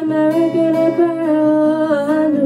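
A young woman's voice humming one long held note over acoustic guitar.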